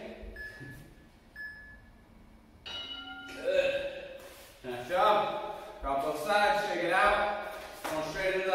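Interval timer beeping twice, two short high beeps about a second apart as its countdown runs out, then a person's voice from about three seconds in.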